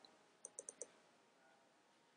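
Four quick clicks of a computer mouse button about half a second in, with near silence around them.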